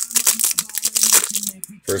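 Wrapper of a 2021 Topps Series 1 baseball card pack crinkling and tearing as it is ripped open by hand: a quick run of sharp crackles that stops just before the end.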